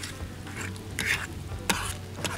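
A utensil stirring and scraping eggs frying in a small camping pot on a gas stove, with a light sizzle. There is a scrape about a second in and a sharp click with another scrape near the end.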